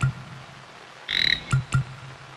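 A frog croaking: one short raspy call about a second in, between short plucked low notes beating a rhythm, over a faint steady hiss of rain.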